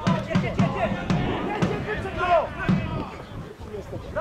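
Shouting voices of players and spectators on a football pitch, with a series of sharp thumps in the first three seconds.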